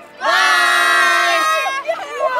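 A group of children shouting together in one long held cheer, lasting about a second and a half, then breaking off.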